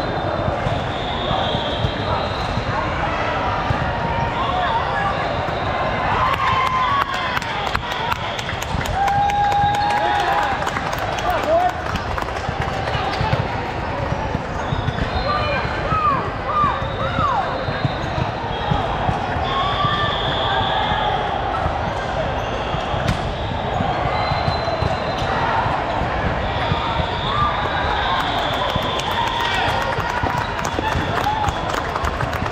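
Volleyballs being hit and bouncing on a hardwood gym floor, with sneakers squeaking and a constant murmur of players' and spectators' voices echoing through a large hall.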